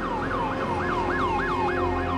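Emergency vehicle siren yelping: fast repeated sweeps that jump up in pitch and fall back, about three a second, over a low rumble.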